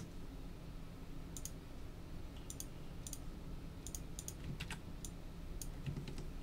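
Computer mouse clicking faintly: about nine short, irregular clicks, some in quick pairs, over a faint steady low hum.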